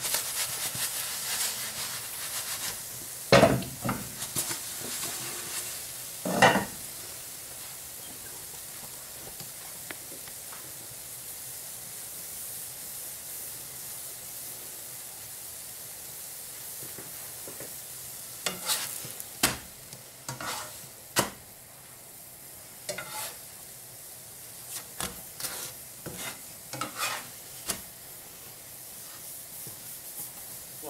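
Pancake batter frying in a lightly oiled non-stick frying pan: a steady high sizzle. Sharp knocks and scrapes come about three and six seconds in, with a run of them in the last third; these are the loudest sounds.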